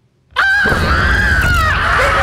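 A sudden loud, high-pitched scream cuts in about a third of a second in, sagging slightly in pitch, over a deep low rumble.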